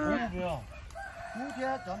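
A rooster crowing, over people talking.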